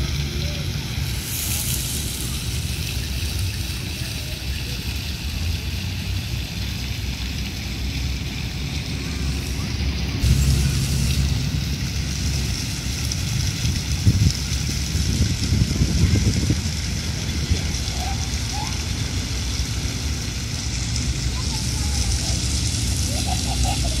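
Water from a fountain's rows of thin jets falling and splashing steadily into its pool, with a low rumble underneath. Faint voices come in near the end.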